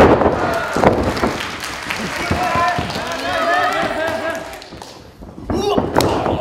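Wrestling ring canvas thudding as two wrestlers crash down, with a second thud about a second in, followed by several voices shouting in the hall.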